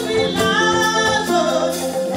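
Live band music with a woman singing lead into a microphone, over drums and other instruments.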